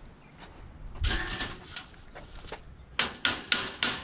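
Sharp metallic taps as a hand crimping tool knocks an aluminum border strip, four quick taps near the end, seating the strip so the mitered corners of the screen frame meet. A shorter clatter of handling comes about a second in.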